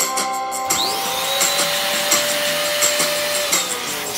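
Electric balloon pump inflating a latex balloon: the motor spins up with a rising whine under a second in, runs at a steady pitch, and winds down near the end.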